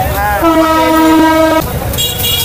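A vehicle horn sounding one steady, held note for about a second, starting about half a second in, over busy street noise.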